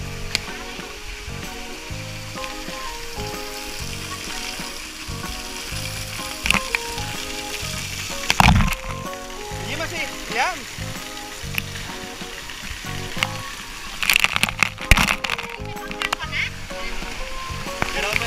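Water spraying on a water-park play structure: a steady hiss of spray, with sudden louder splashes about eight seconds in and several more from about fourteen seconds on, as water hits the camera.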